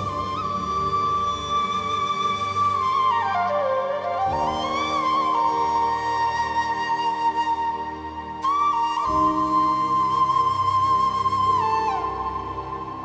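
Background score: a flute playing a slow melody of long held notes with bends and slides between them, over sustained low accompanying chords. The low chords change about four seconds in and again about nine seconds in.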